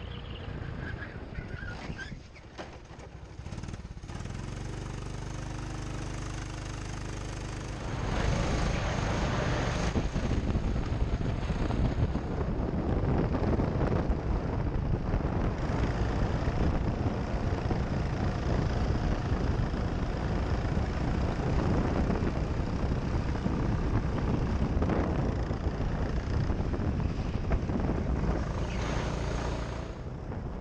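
Go-kart engine running as the kart drives around the track, a steady engine note at first. About eight seconds in it becomes much louder and noisier, at speed, and holds so.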